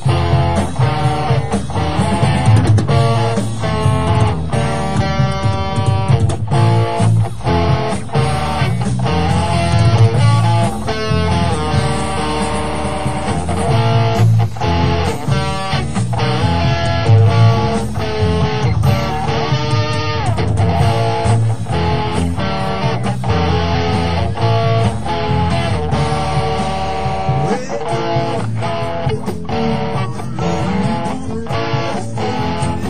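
Electric guitar and bass guitar playing a live rock instrumental passage, with no vocals.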